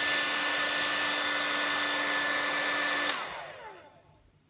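Panasonic EH-NA45 nanoe hair dryer blowing steadily with a motor whine, then switched off with a click about three seconds in; the whine falls in pitch as the fan spins down and the rush of air fades away.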